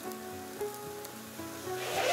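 A wood fire crackling in a fire pit under a soft background melody of single held notes. A louder rustle comes in near the end.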